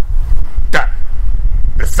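Steady low wind rumble on the microphone, with one short, sharp vocal call about three-quarters of a second in.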